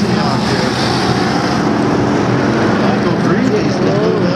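Race car engines running at low, steady revs as cars circle the track, with people's voices chattering over the drone.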